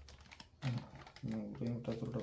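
Plastic bag crinkling and rustling as it is handled and lowered into a glass fishbowl of water. From about half a second in, a low voice speaking or humming is louder than the rustling.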